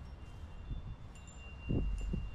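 Wind chime ringing: a clear high tone struck about a second in and ringing on. Under it is a low rumble, with a few low thumps near the end.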